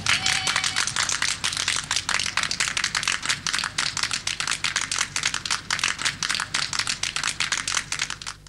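A small group of people applauding: a dense, steady patter of hand claps.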